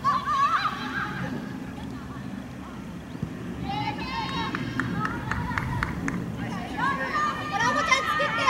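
Players shouting short calls to one another on the pitch during open play of a women's soccer match, over steady outdoor noise. There is a burst of shouts just after the start, another in the middle and more near the end.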